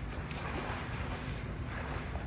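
Steady low rumble and hiss of wind buffeting a phone's microphone outdoors.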